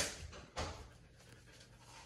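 Quiet room with one short, faint handling noise about half a second in, as items are moved on a wire pantry shelf, then near silence.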